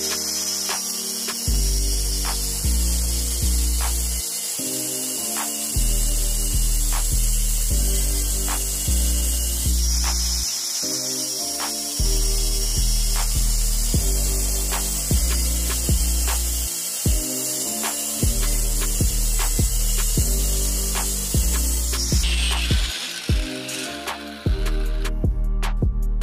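Angle grinder with a cutting disc cutting steel, a steady high hiss that stops about 22 seconds in, then a falling whine as the disc winds down. Background music with a steady beat and bass plays throughout.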